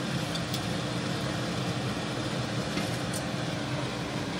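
A steady low hum with a hiss over it, as of a fan or small motor running, with a couple of faint ticks.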